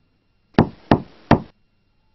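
Three quick knocks on a door, about a third of a second apart.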